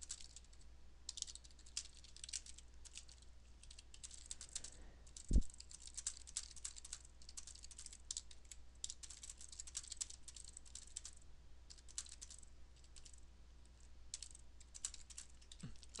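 Typing on a computer keyboard: quick, irregular keystrokes go on throughout, with one low thump about five seconds in.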